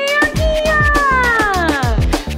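Upbeat birthday-song backing track with a steady drum beat. Over it runs one long, drawn-out cat-like meow that rises in pitch and then slides down over about two seconds.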